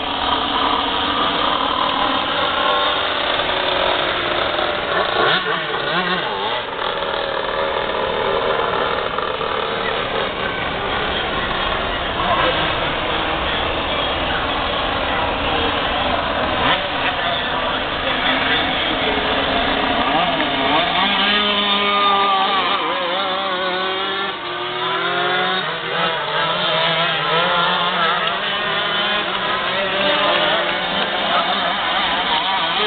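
A pack of 125cc two-stroke shifter cage kart engines racing on a dirt oval. Their pitch rises and falls continuously as the karts accelerate down the straights and lift for the turns.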